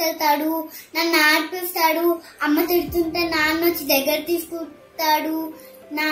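A young girl singing in short phrases, with brief pauses between them.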